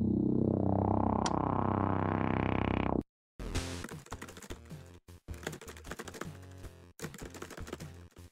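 A thick, steady musical chord held for about three seconds that cuts off suddenly. After a brief silence come rapid clicks of game-controller buttons being pressed, mixed with short electronic video-game tones.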